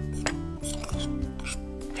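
Soft background music with steady held notes, over a metal spoon scraping and stirring a dry ground za'atar mix in a glass bowl.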